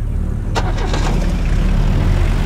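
An SUV's engine running with a steady low rumble, a sharp click about half a second in, then engine and road noise growing a little louder as the vehicle gets moving.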